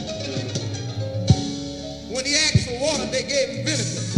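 Live gospel recording: the band plays on with bass and sharp drum hits, and from about halfway a lead voice sings a wavering, melismatic line over it.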